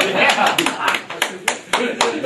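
Small audience clapping irregularly, with laughter and voices.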